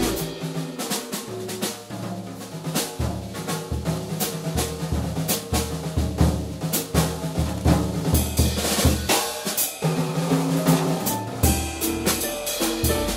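Live jazz combo with the drum kit to the fore, with cymbal and snare strokes and kick-drum hits, over a walking bass line.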